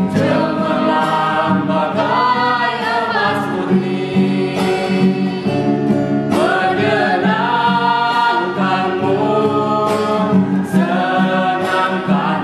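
A small mixed group of voices singing an Indonesian gospel song together, accompanied by an acoustic guitar.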